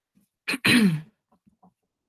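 A woman clearing her throat about half a second in: a short catch, then a longer rasp that falls in pitch.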